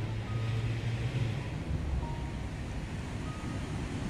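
Steady low rumble of outdoor city traffic, strongest in the first second or so, with a few faint short high tones over it.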